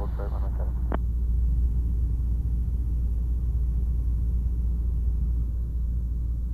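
Cessna 172SP's four-cylinder Lycoming engine and propeller heard from inside the cabin: a steady, deep drone at reduced power for the descent to landing.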